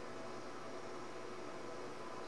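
Faint steady hiss with a low, even hum: room tone in a pause between speech.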